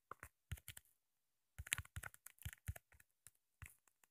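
Faint, light taps of a fingertip typing on a phone's touchscreen keyboard: about a dozen short clicks at an uneven pace, with a brief pause about a second in.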